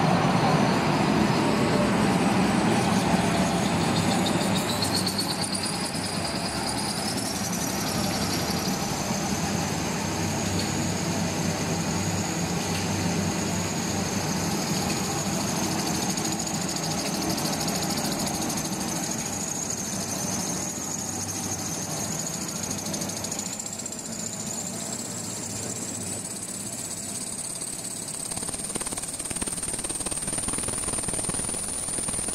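Jumbo-roll paper slitting and rewinding machine running with a steady mechanical din. A high whine rises in pitch from about four seconds in, holds with a slight waver, and climbs again near the end.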